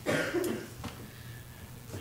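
A short cough at the start, followed by a couple of faint clicks.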